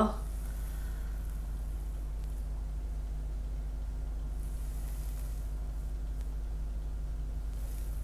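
Steady low background hum with a faint even hiss; the slow pour of paint makes no distinct sound.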